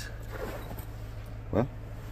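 Steady low hum, with a faint rustle of handling or movement about half a second in.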